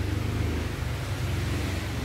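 Steady low background rumble with no distinct events, the same hum that runs under the surrounding talk.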